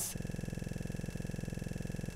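A steady buzz made of several steady tones, pulsing fast and evenly.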